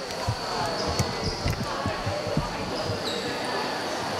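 Basketballs bouncing on a court: irregular low thuds, several a second, with a few short high squeaks and people's voices.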